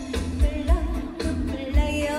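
A woman singing a Korean trot song live over a full band, her voice wavering in vibrato above a steady kick-drum beat.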